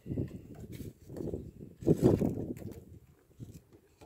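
Irregular rustling and knocking from handling a rope and a piece of cardboard on a truck tailgate while a folding knife's blade is pressed onto the rope, with the loudest knock about two seconds in.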